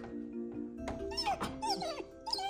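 Golden retriever puppy whining, several short high whines falling in pitch in the second half, over steady background music. She has just been shut in her crate for the night.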